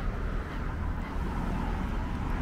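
Steady noise of car traffic driving along the city street, a continuous low rumble with no single standout event.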